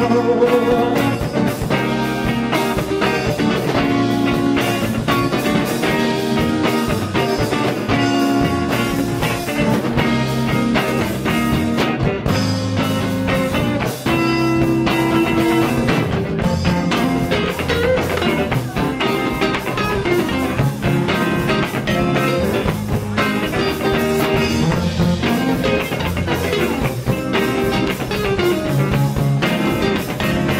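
Indie rock band playing live: an instrumental passage led by electric guitars over a steady beat, with no singing.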